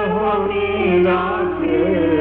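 A sung devotional bhajan: one voice holds and bends a slow melodic line over a steady low drone. The recording sounds dull, with no treble.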